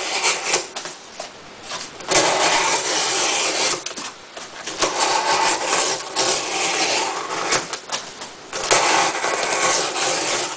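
Gerber Profile's 420HC steel blade slicing down through cardboard: a series of scratchy cutting strokes, each one to three seconds long, with short pauses between.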